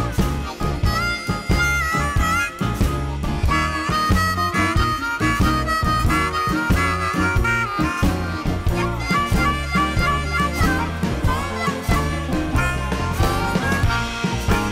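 Blues band instrumental break: a harmonica leads with held and bending notes over bass, drums, piano and guitar.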